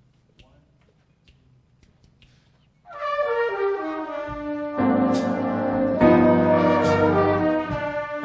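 A high school jazz big band comes in about three seconds in with sustained brass chords from the trumpets and trombones. Two cymbal crashes sound over the held chords. Before the entry there are only faint ticks in a hushed hall.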